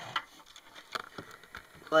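Several short, light knocks and handling noises as a soccer cleat is moved by hand and set down on a wooden surface.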